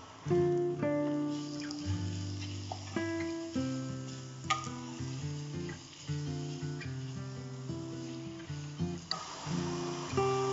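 Background music: a melody of short plucked notes, each held briefly before the next.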